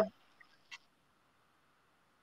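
The tail of a man's word at the very start, then quiet with a faint steady background hiss and one small click about three-quarters of a second in.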